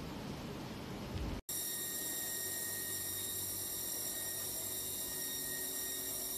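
Steady hiss of recording noise, broken by a brief dropout about one and a half seconds in, after which faint, steady high-pitched whining tones sit over the hiss.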